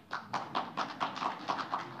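Audience applauding, with a dense patter of separate hand claps.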